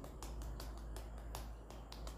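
Light, quick slaps of the palms against the cheeks, both hands patting the face in turn: a fast, soft, even run of about five or six pats a second.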